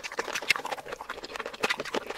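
Close-miked mouth sounds of someone chewing saucy seafood: an irregular string of quick wet clicks and smacks, with one sharper click about a quarter of the way in.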